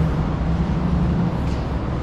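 Steady low hum of a building's ventilation system.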